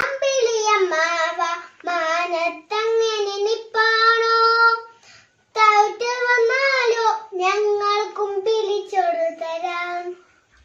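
A young girl singing unaccompanied, in short melodic phrases with one long held note about four seconds in and a brief pause just after.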